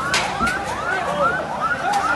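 Sirens yelping: many short rising-and-falling whoops that overlap one another without a break, with a couple of sharp knocks early on.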